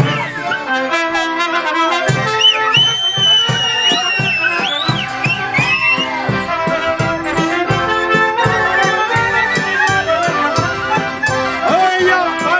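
Folk brass music from a band of Christmas carolers, a trumpet leading over a steady, regular beat. A high sliding tone rides over the music from about two to six seconds in.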